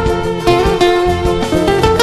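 Live band playing an instrumental passage: violins carrying a sustained melody over strummed guitar and a steady beat.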